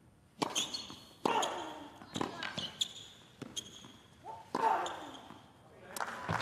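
Tennis rally on a hard court: a string of sharp ball strikes off the rackets and bounces, about a second apart, with a player's short grunt on one shot.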